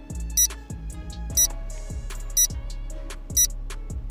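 Background music with a steady beat, over which a short, high countdown-timer tick sounds once a second, four times. The ticks are the loudest sounds.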